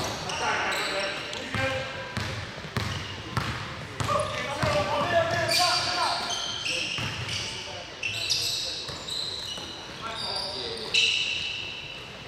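Basketball game on a hardwood gym court: the ball bouncing and knocking, short high sneaker squeaks, and players calling out across the court.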